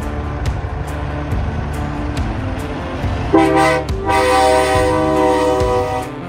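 Semi truck's air horn sounding over background music: a short blast about three seconds in, then a longer held chord of several tones lasting about two seconds.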